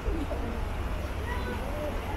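Voices of passersby talking, in short rising-and-falling snatches, over a steady low city rumble.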